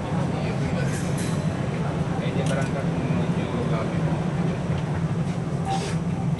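Steady low rumble and hum of the Kalayang airport Skytrain running along its guideway, heard from inside the cab.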